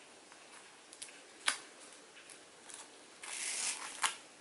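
Bagged comic books being handled: a few light taps, the sharpest about a second and a half in, then a brief rustle of the plastic sleeves near the end.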